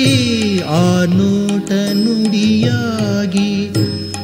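Kannada bhavageethe (light-music song) playing: a melody of held notes with gliding ornaments over a steady low drone.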